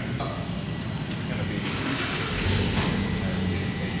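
BMW E46 330Ci's M54 3.0-litre inline-six running on its first start with open headers and no mid pipes: a deep exhaust rumble that gets stronger about two and a half seconds in.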